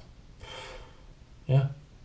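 A man takes a short, audible breath about half a second in, then says a brief word.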